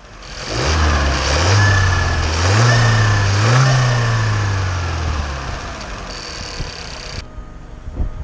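Volkswagen Passat B8 engine, heard with the bonnet open, revved up in several quick steps and then settling back to idle about five seconds in.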